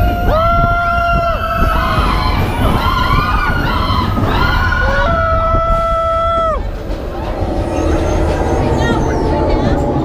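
Roller coaster riders on Expedition Everest screaming in long, held yells over a steady low rumble of wind on the microphone and the moving train. The screaming dies away about seven seconds in.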